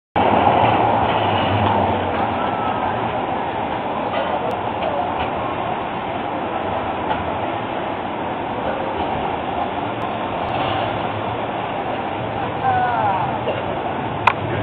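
Street tram passing close, its running noise loudest in the first two seconds, settling into a steady hiss of city street noise. People's voices can be heard near the end.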